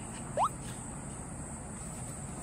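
A Maltese dog gives one short, quickly rising whine about half a second in; the rest is low room noise.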